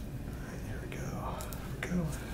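Soft whispered speech over a low room hum, with a short click near the end.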